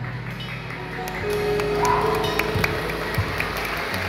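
A live band's song has just ended: a few scattered held instrument notes sound over the stage's background noise, with several light knocks.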